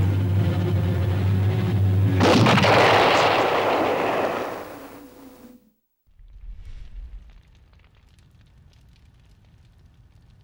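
Explosion sound effect: a steady low drone, then about two seconds in a sudden loud boom that rumbles away over about three seconds and cuts off. A faint low rumble and quiet crackling follow.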